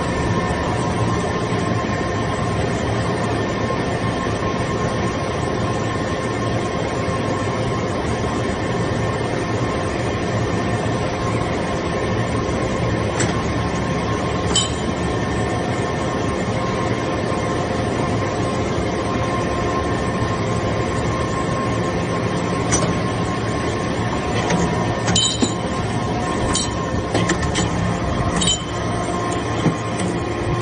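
Hydraulic metal-chip briquetting press running, with a steady hum from its electric motor and hydraulic pump. Several sharp metallic clinks come in the second half.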